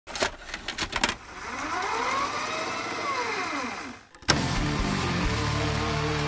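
Intro sound design: a few sharp clicks, then a whooshing sweep with tones that rise and fall in arcs, cut off by a sudden start of music with steady held chords about four seconds in.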